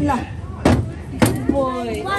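Children's voices chanting 'choo-choo', with two sharp knocks about two-thirds of a second and a second and a quarter in.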